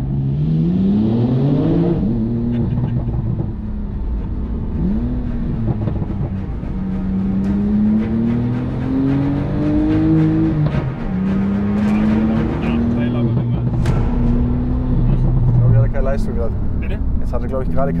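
Porsche 911 Turbo S (991.2), tuned by 9ff to about 950 PS, heard from inside the cabin as it accelerates; its twin-turbo flat-six is running under load. The engine note climbs quickly and drops at a gear change about two seconds in. It then climbs slowly again until a second drop about ten and a half seconds in, and runs fairly steady after that.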